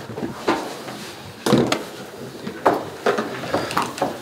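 Irregular knocks and clatter, about five sharp ones, from chairs and equipment being bumped and moved about.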